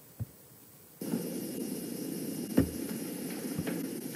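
A light click, then about a second in a steady hiss and hum of room noise begins as a home webcam recording starts playing, with one soft knock in the middle and a faint tick near the end.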